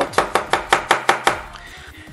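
The opened Moto G5 Plus phone body being tapped repeatedly, about six quick knocks a second, to shake dirt out of the fingerprint reader. The tapping stops about a second and a half in.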